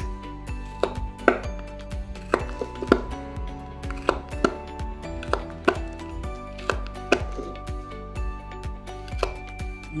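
A thumbtack punching holes through the bottom of a paper cup, with a sharp click each time the pin pops through the paper, irregularly about once or twice a second. Background music plays underneath.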